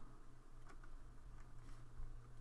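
Quiet room tone with a steady low hum and a couple of faint computer mouse clicks.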